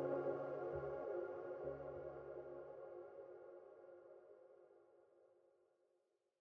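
The song's final sustained chord fading slowly away to silence, with a couple of low notes changing in the first two seconds.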